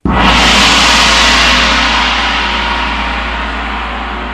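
Horror-film stinger: a sudden loud gong-like hit that rings on and slowly fades, over a deep low rumble.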